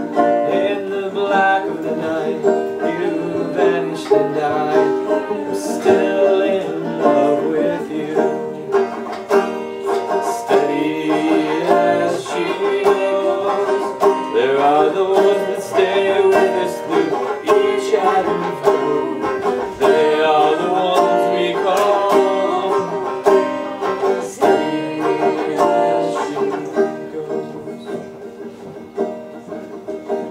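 Banjo picked steadily, accompanying a folk song, with singing at times.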